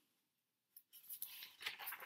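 Near silence: dead quiet for most of the first second, then faint scattered clicks and small noises, and a woman's voice begins faintly near the end.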